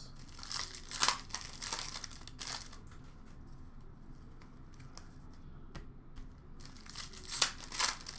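Plastic hockey card pack wrapper crinkling as it is torn open and the cards handled, in short rustling bursts during the first few seconds and again near the end.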